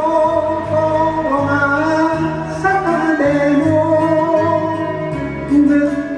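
A singer's voice through a handheld microphone, holding long notes of an enka ballad over a karaoke backing track, with a bass line stepping to a new note about every second.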